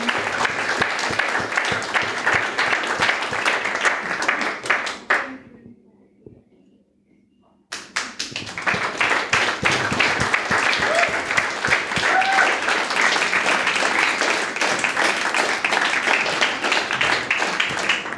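Audience applauding with dense, even clapping. It fades out about five seconds in, drops to near silence for about two seconds, then starts again suddenly and carries on.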